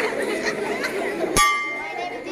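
Many children's voices chattering together, then about one and a half seconds in a single sharp metallic clang that rings on briefly.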